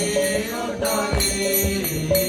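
Devotional chanting of a mantra, sung voices accompanied by jingling percussion and low drum beats.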